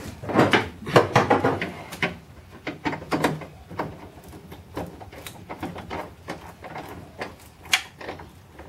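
Irregular small metal clicks, taps and knocks as handbrake mounting bolts and nuts are fitted by hand up under a car's dashboard. They are busiest in the first two seconds.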